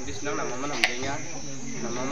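A man talking, over a steady high-pitched drone of insects, with one sharp click a little under a second in.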